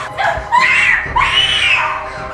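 A young woman screaming in fear as she is grabbed, two long high screams one after the other.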